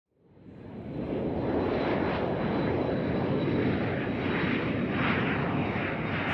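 A steady rumbling engine drone with rushing air, fading in over about the first second, with a thin high whine held steady over it.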